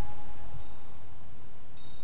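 Wind chimes ringing in a light breeze: a few thin, lingering tones, one fading out about half a second in and a higher one sounding near the end, over a low rumble of wind noise.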